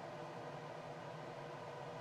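Quiet, steady room tone: an even low hiss with no distinct events.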